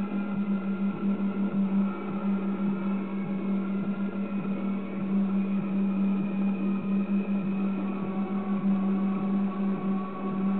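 A steady low hum with a rough, wavering noise over it.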